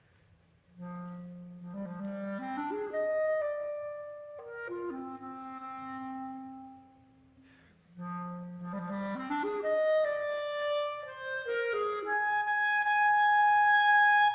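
Solo clarinet playing unaccompanied, entering about a second in with a phrase that climbs in steps from its low register to a long held note. After a brief pause it starts the same climbing figure again and carries it higher, ending on long held high notes.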